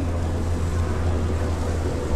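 A steady low hum with a light hiss over it.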